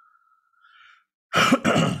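A man clears his throat: a loud, rough burst lasting about half a second, starting about a second and a half in.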